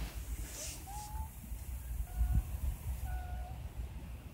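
Wind buffeting the microphone outdoors as a low, uneven rumble, with three short, faint, steady tones about a second apart.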